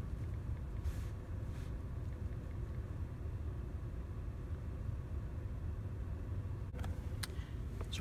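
Volkswagen Jetta's engine idling, heard inside the cabin as a steady low rumble with a faint steady hum above it. A couple of faint clicks come near the end.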